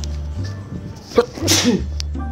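A person sneezing once, a sharp burst of breath a little past the middle, over steady background music.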